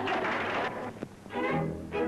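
A short burst of laughter, then orchestral music with bowed strings starting about a second and a half in, from an old newsreel soundtrack. A brief click falls in between.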